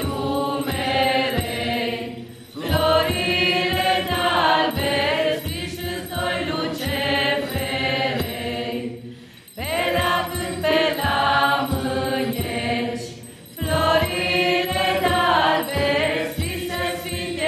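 A mixed group of men's and women's voices singing together in long phrases, with brief pauses for breath between the phrases.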